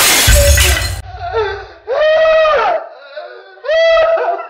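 A framed painting smashed down with a loud crash and a heavy thud in the first second, followed by two long, loud, wordless cries from a woman, one in the middle and one near the end.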